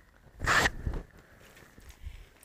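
Cloth rustling as a suit fabric is flipped over and spread out: one sharp swish about half a second in, followed by a few fainter rustles.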